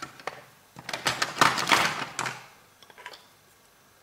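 Plastic solder-paste syringe being handled and pressed onto a plastic transparency stencil: a quick flurry of clicks and crackles about a second in, lasting a second and a half, then a few faint clicks.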